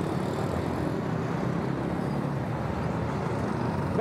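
Road traffic going by: a motorcycle and a pickup truck passing, a steady run of engine and tyre noise.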